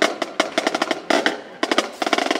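Marching drumline snare drums playing a fast, dense pattern of sharp strokes with rolls.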